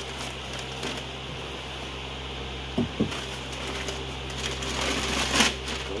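Tissue wrapping paper rustling and crinkling as hands dig through a cardboard box, louder in the last second or two, over a steady low electrical hum. Two short low sounds come about three seconds in.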